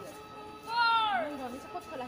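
A female voice calls out once, loud and drawn out, its pitch falling, about a second in, with fainter voices around it.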